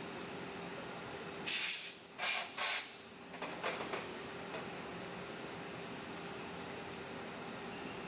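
A steady machine-shop hum, with a few short scraping sounds about one and a half to four seconds in as the operator handles the manual vise column and its parts.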